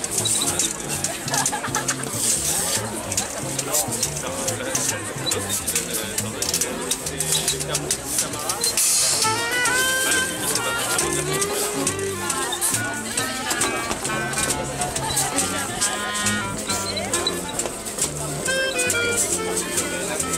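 Live swing jazz from a small acoustic band: a double bass walks a steady line under a reed instrument's melodic runs, with a busy rhythmic clatter on top. Crowd chatter runs underneath.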